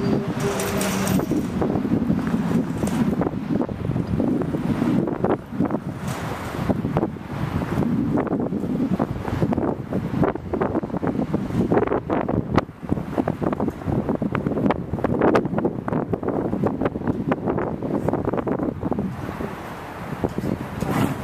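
Wind buffeting an outdoor microphone in uneven gusts, with a brief low hum in the first second or so.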